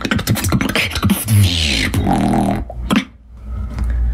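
Human beatboxing in a bass-funk style: quick clicking kick and snare sounds, then a pitched mouth bass that slides up and down. It cuts off about three seconds in, leaving a low hum.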